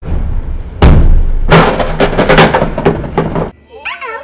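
A loud, distorted run of knocks and thuds over a rough noisy background, the heaviest about a second in, cutting off abruptly about three and a half seconds in.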